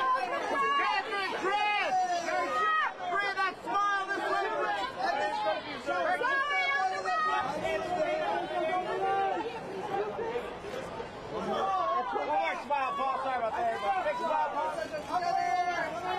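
Overlapping voices of press photographers calling out at once, too jumbled for single words to come through.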